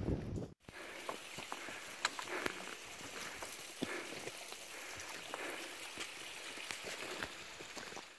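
Footsteps crossing a rocky boulder field, with stones clicking and knocking under foot at an irregular pace, over a steady faint hiss.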